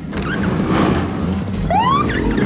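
Electronic police siren on a small parking-enforcement cart giving a short whoop that rises in pitch near the end, over a busy background.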